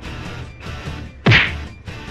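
A single hard blow landing on a person, a punch or whack, a little over a second in, over a low steady background.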